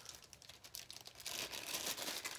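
Clear plastic bag crinkling as hands pull a small white skimmer venturi part out of it: a quiet, dense crackle that grows louder about halfway through.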